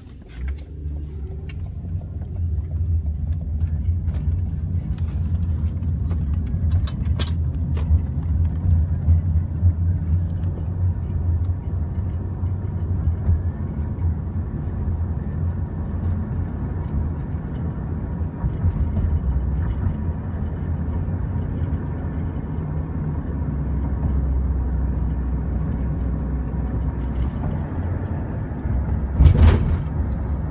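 Road and engine noise inside a moving car's cabin: a steady low rumble. A brief knock comes about seven seconds in, and a louder thump comes just before the end.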